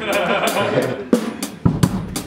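Drum kit playing, with sharp kick and snare hits coming through a few times, under laughter and voices in the room.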